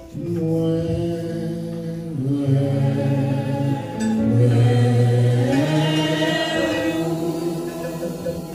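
Slow worship singing: long held notes that step to a new pitch every second or two, like a chant, sung into a microphone.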